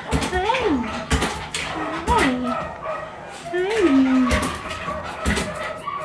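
A woman's voice cooing in three drawn-out wordless calls, each rising and then sliding down to a held low note, with scattered knocks and handling noises.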